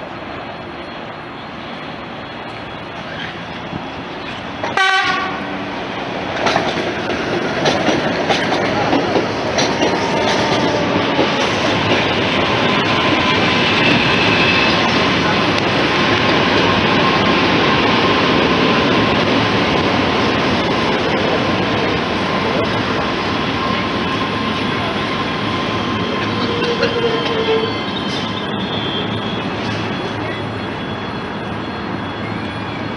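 Electric commuter train gives a short horn blast about five seconds in, then runs in alongside the platform, its wheels clicking over the rail joints, with a steady whine that lasts about ten seconds before the sound eases off near the end.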